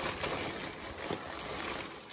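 Thin tissue paper rustling and crinkling as it is pulled off a sneaker, growing quieter toward the end.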